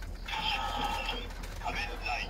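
Kamen Rider Decade DX Decadriver toy belt sounding off after a Rider card is slotted into its buckle: a synthesized electronic voice call and steady electronic standby tones, starting about a third of a second in.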